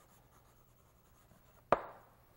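Chalk writing on a blackboard: faint scratching strokes, then a single sharp tap of the chalk against the board near the end as a full stop is dotted.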